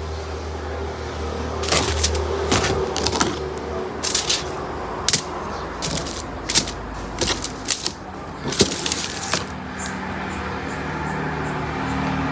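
Hairdressing scissors snipping through hair: a dozen or so short, sharp snips at an irregular pace, over a steady low hum.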